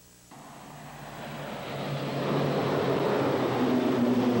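Turboprop aircraft engines droning in flight. The sound comes in about a third of a second in and grows louder over the next two seconds, with a low steady hum under it.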